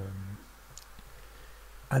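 A few faint computer mouse clicks in a quiet room, after a drawn-out spoken hesitation at the start.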